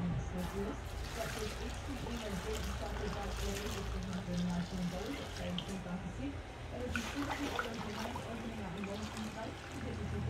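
Epoxy resin pouring from a plastic bucket onto crushed glass, a faint trickle under a steady low hum.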